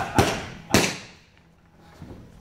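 Three punches smacking into leather focus mitts: two in quick succession, then a third about half a second later, each followed by a short echo.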